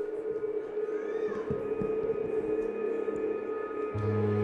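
A live band's sustained drone note slowly swelling as a song's intro, with a short tone that glides up and back down about a second in.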